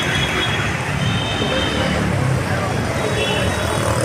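Steady street traffic noise: engines and tyres of passing vehicles on a busy road, with voices in the background.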